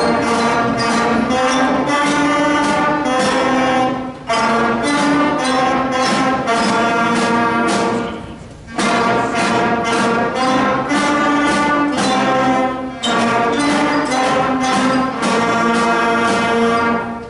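Middle school concert band of brass and woodwind instruments playing a piece together, held chords moving phrase by phrase with short breaks between phrases, the longest about eight seconds in.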